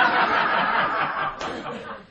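Comedy club audience laughing at a punchline, the laughter dying away near the end.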